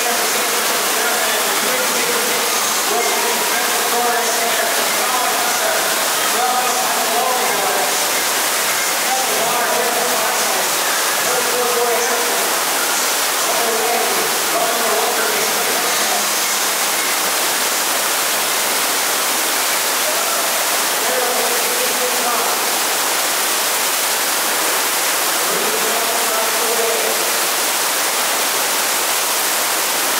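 FlowRider sheet-wave machine running: a steady, loud rush of water jetting up and over the ride surface. People's voices come and go underneath.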